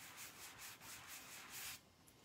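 Faint, quick rubbing strokes, about six or seven a second, of an adhesive silk-screen transfer being rubbed against a fabric towel to pick up lint and dull its stickiness; the rubbing stops near the end.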